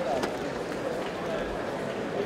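Audience chatter: many overlapping voices talking at once in a large, echoing auditorium, with no single voice standing out.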